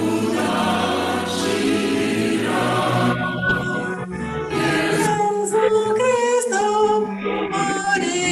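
A group of voices singing a hymn together. The sound is dense and full for about the first three seconds, then thins to fewer voices holding clear, wavering notes.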